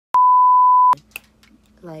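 A single loud, steady bleep tone lasting just under a second, starting and stopping abruptly: an edited-in censor bleep dubbed over a word in the monologue. A woman's voice says "Like" near the end.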